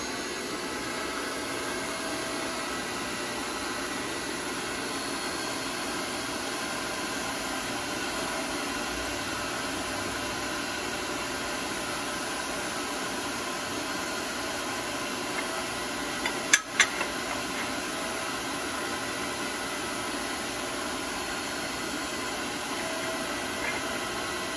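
Electric motor and hydraulic pump of a self-contained hydraulic bender running steadily while the ram pushes on a steel bar to straighten it. A brief cluster of sharp clicks comes about two thirds of the way through.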